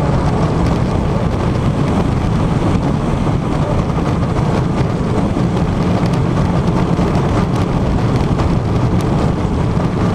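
Superman Ride of Steel hyper coaster train running at speed: a steady loud roar of wind on the onboard camera's microphone mixed with the train's rumble on the track.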